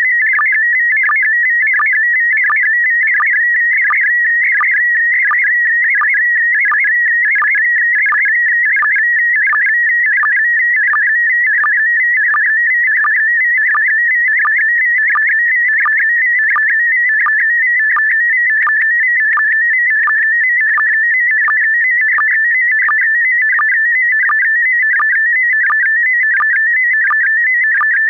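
Slow-scan TV image transmission: a warbling tone that jumps about between roughly 1.5 and 2.3 kHz as it scans the picture line by line, with a short sync click about twice a second.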